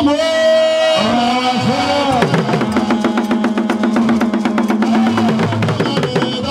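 Church worship music: a leader singing into a microphone with held, sliding notes over drums. About two seconds in the drumming turns into a fast run of rapid strokes that lasts until near the end.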